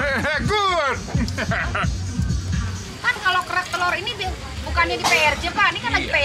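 Voices talking over music, with crowd babble in the background.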